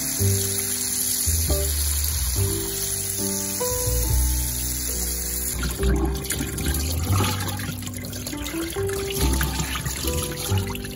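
Kitchen tap water running over raw flounder fillets in a bowl, then, about six seconds in, hands sloshing the fillets around in the bowl of water. Background music plays throughout.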